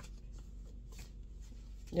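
A stack of paper cards being handled and flipped through, with faint scattered rustles and light flicks.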